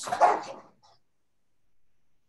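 A dog barks once, loud and short, heard over a video call's audio.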